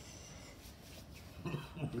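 Quiet room noise, then a man starts speaking about a second and a half in.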